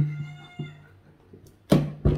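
A man's low, steady closed-mouth hum, broken once, then a sudden burst of laughter near the end.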